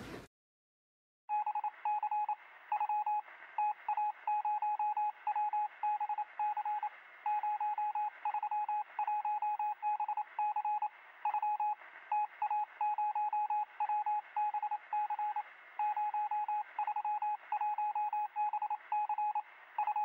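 An electronic beep tone that starts about a second in and is keyed on and off in short and long pulses with an uneven rhythm, like Morse code. It sounds thin and narrow, as if heard over a radio or telephone line.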